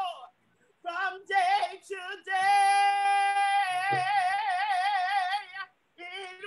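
A woman singing a gospel song solo, in short phrases and then a long held note that breaks into a wide vibrato before it ends.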